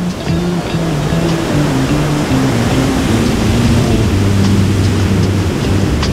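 Ocean surf breaking and washing up the beach, under background music with a slow melody of held low notes.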